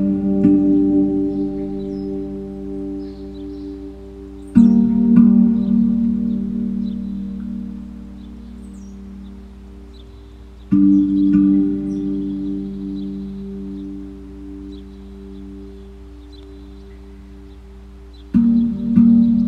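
Meditative music: a steel hand drum struck with deep, ringing notes, three times in all, at the start, about four and a half seconds in and near eleven seconds, each left to fade slowly over a low steady drone. Faint bird chirps sound high above it.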